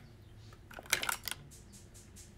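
A quick run of sharp little clicks and taps about a second in, as small plastic makeup items are picked up and handled.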